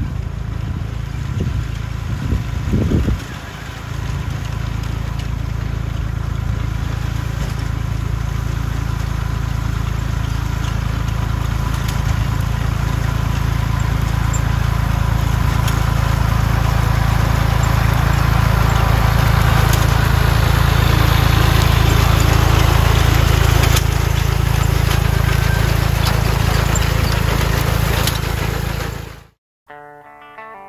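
Farm tractor engine running steadily under load as it pulls a ground-driven McCormick-Deering grain binder through oats, with the binder's mechanism clattering over it and occasional sharp clicks. It grows louder as the rig approaches, then cuts off suddenly near the end.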